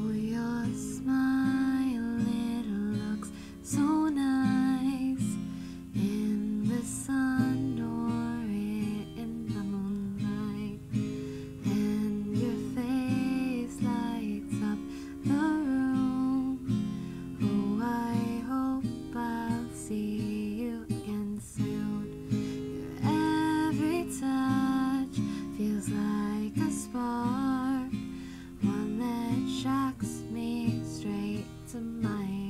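Takamine acoustic guitar strummed with a capo on, playing a steady chord progression.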